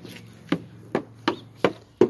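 Footsteps crunching on dry leaves and mulch at a walking pace, about three steps a second.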